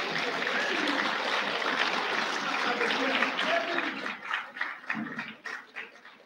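Audience in a hall applauding, with a few voices cheering. After about four seconds the applause thins into scattered claps and dies away.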